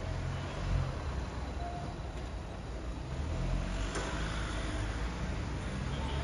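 Low, uneven rumble of urban outdoor background noise.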